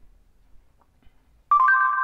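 Near silence, then about one and a half seconds in an Android phone's voice assistant sounds a sudden electronic chime: a steady tone joined by a second, higher one. It marks that the dictated message has been taken, just before the assistant's synthetic voice reads it back.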